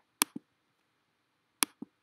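Two clicks of a computer mouse button about a second and a half apart, each a sharp press followed by a softer release.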